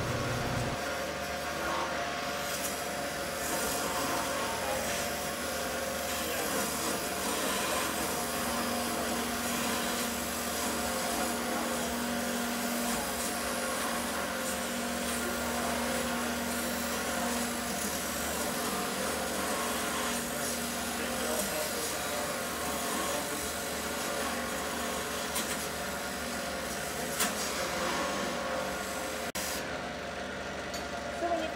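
Wood lathe running while a turning tool cuts the spinning wooden mallet handle, shaping the tenon at its top end: a steady shaving hiss over the lathe's hum. Near the end the tool comes off the wood and the cutting noise drops away.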